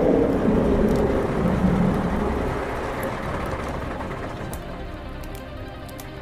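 A noisy rumbling sound effect that fades away steadily over several seconds, with a faint music bed beneath it.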